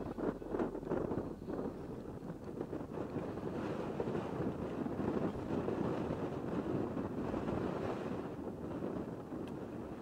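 Wind blowing across a camera microphone outdoors: a steady rushing noise without any pitch, heard in playback of handheld outdoor footage.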